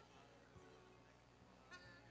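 Near silence: faint, soft background music under a steady low hum of the room's sound system, with a brief faint voice near the end.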